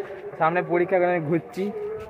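A man's voice speaking quietly in short phrases, ending on a drawn-out, level-pitched sound.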